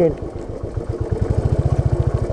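Royal Enfield Bullet's single-cylinder four-stroke engine running at low revs in a fast, even beat of exhaust pulses. It gets louder about a second in.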